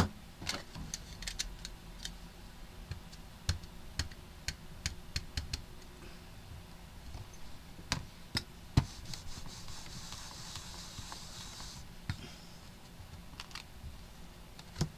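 Scattered light taps and clicks of hands handling card stock and sticky tape on a plastic stamping platform, with a soft rustle for a couple of seconds before it stops suddenly.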